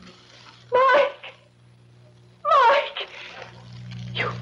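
Two short wailing cries, about a second and a half apart, each falling in pitch, over a low steady drone that grows louder near the end.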